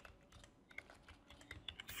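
Faint typing on a computer keyboard: scattered soft keystroke clicks that come quicker in the second half.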